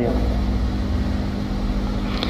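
A steady, machine-like hum: a strong low rumble with two steady low tones and a hiss over it, unchanging through the pause in speech.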